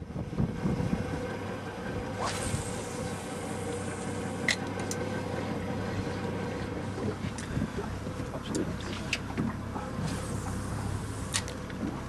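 A small boat running slowly on calm water: a steady low motor hum with water washing at the hull, and a few short, sharp clicks.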